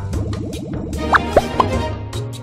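Slot game's looping background music with cartoon plopping sound effects: three quick rising blips a little past the middle as new symbols drop onto the reels.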